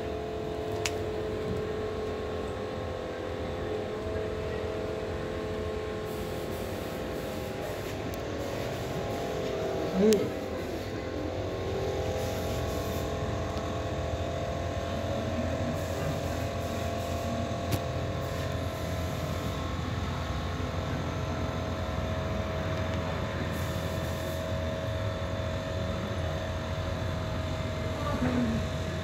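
Steady low hum of a running engine, even in level and pitch throughout, with a short murmured "mm, mm" about ten seconds in.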